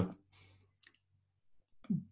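A pause in speech: a word trails off at the start, then near silence broken by a few faint clicks, most of them near the end.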